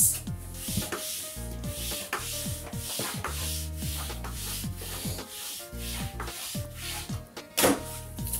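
A Quickle Mini Wiper's flat head with its wiping sheet being pushed over a smooth floor: repeated rubbing strokes, about one or two a second, with a short, louder scrape near the end.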